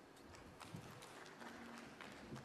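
Near silence with a few faint, scattered clicks and knocks in the first second.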